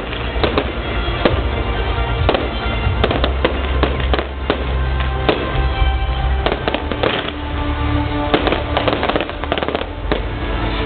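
Fireworks display: a rapid, irregular series of bangs from bursting shells and launches, several a second, over music with a steady bass line.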